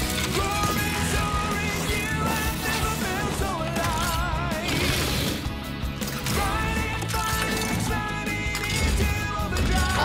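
Transformation-sequence music with a steady, pulsing bass beat and wavering melody lines running over it.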